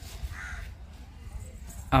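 A single short, faint bird call about half a second in, over a low steady outdoor rumble.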